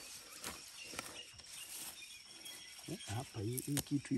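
A short-handled hand hoe chopping into moist soil among weeds: a few soft, separate strikes in the first couple of seconds. A faint voice comes in near the end.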